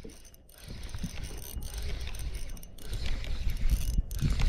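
Spinning reel cranked against a hooked fish, its gears and clicking mechanism working under load.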